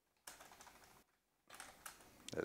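Faint computer keyboard typing: a quick run of keystrokes, a short pause, then a few more keys.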